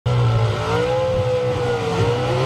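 Pro Stock Chevrolet Camaro's naturally aspirated V8 drag-racing engine running steadily at low revs as the car rolls slowly forward.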